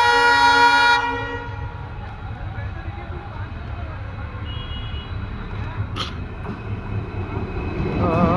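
Air horn of twin WDG4D diesel locomotives sounding a long multi-tone blast that cuts off about a second in, followed by the low rumble of the approaching locomotives growing louder toward the end. A brief sharp click about six seconds in.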